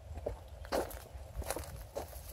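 Footsteps of someone walking along a dry dirt footpath strewn with dry grass: about four steps, the one just under a second in the loudest.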